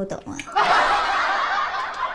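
Laughter: breathy snickering that starts about half a second in, after a brief dip.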